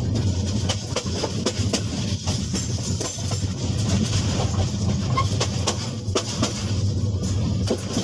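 Dubbed-in train sound effect, not the pier train itself: a steady low rumble of a rail vehicle with irregular clicks and clatter from wheels on track.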